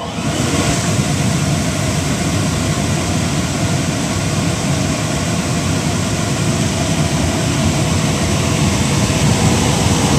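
Horizon paper-waste vacuum running steadily on three-phase power: an electric blower with a loud, even rush of air over a low motor hum.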